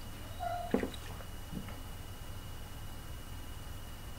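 Someone drinking from a plastic water bottle: a brief squeak, then a few soft gulps and clicks over a low steady hum.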